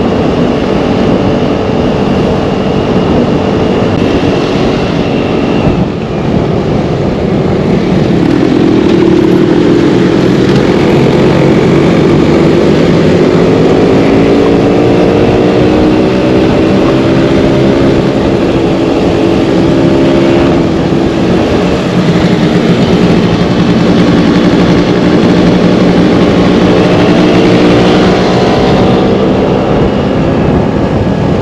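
Scooter engine running at road speed, heard from on board, its pitch climbing as it accelerates about eight seconds in and again near the end.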